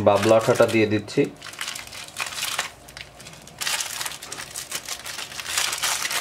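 Small clear plastic bag crinkling as hands handle and open it. The rustle grows denser and louder a little past halfway.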